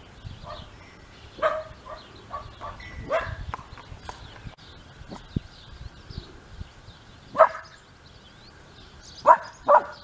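A dog barking now and then: single barks, then a quick, louder double bark near the end.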